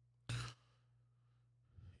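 A man's single short breath into a close microphone, about a third of a second in, with near silence around it.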